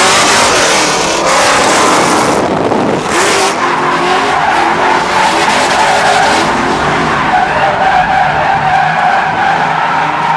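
Pontiac GTO V8 drift car heard from inside the cabin during a tandem drift: the engine revs up and down at high rpm while the tyres skid and squeal continuously. Near the end the squeal settles into a steadier high tone.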